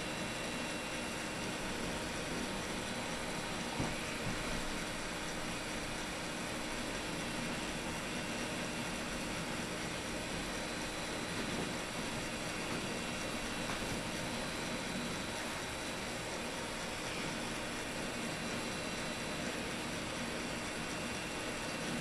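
Steady hiss with a few faint steady hum tones underneath: the background noise of the recording, with no other sound standing out.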